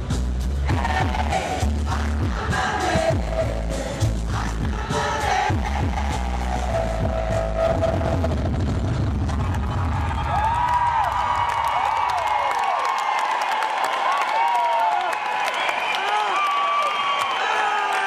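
Live hip-hop track with a heavy bass beat played loud through an arena PA, sounding echoey and rough on a camera microphone. The beat stops about two-thirds of the way through, and the crowd goes on cheering and screaming.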